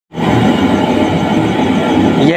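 A loud, steady rumbling roar with no breaks, starting abruptly at a cut.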